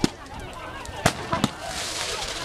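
Fireworks going off with three sharp bangs, one at the start, one about a second in and another shortly after, over faint crowd voices.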